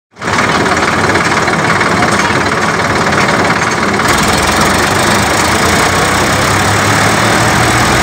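Tractor diesel engine running loud and steady close by; about four seconds in its sound becomes deeper and fuller.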